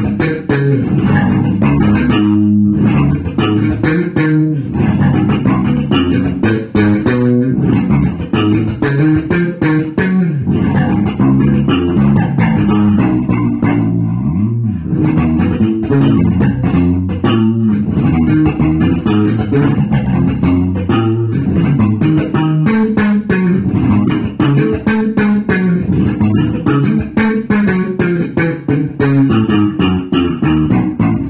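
Electric bass guitar playing a jazz-funk groove: a continuous run of quick plucked notes.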